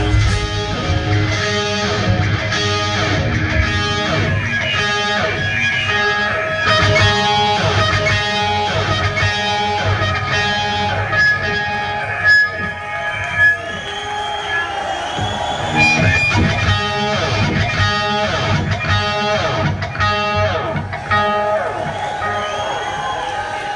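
Live rock band playing an instrumental passage: electric guitars over a regular repeated chord rhythm with bass and drums, with lead-guitar notes bending in pitch in the middle.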